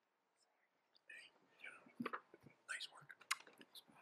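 Near silence with faint whispered voices and a few small clicks and knocks, beginning about a second in.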